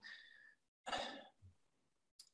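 A person's soft breath, about a second in, taken in a pause between phrases of speech. The rest of the pause is near silence.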